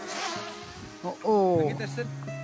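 Small quadcopter drone buzzing as it flies low overhead, its pitch falling for about half a second just past the middle, over steady background music.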